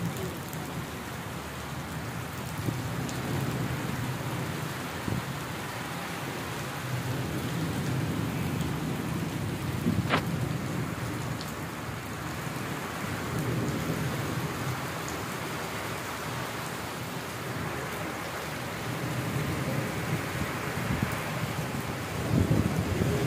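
Steady heavy rain falling on brick paving, with a low rumble underneath that swells and fades. A single sharp click about ten seconds in.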